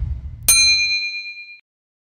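A notification-bell ding sound effect: a sharp click and a bright ringing tone about half a second in, fading out about a second later. Under it, a low rumble dies away during the first second.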